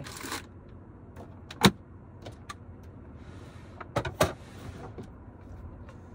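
Dishes and utensils being handled and set down on a small counter: a few sharp clicks and knocks, the loudest about a second and a half in and two more near four seconds, with brief rustling between.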